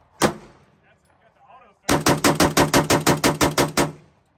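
Genesis Arms Gen-12 semi-automatic 12-gauge shotgun fired as fast as the trigger can be pulled: one shot just after the start, then a rapid even string of about sixteen shots at roughly eight a second, emptying the magazine.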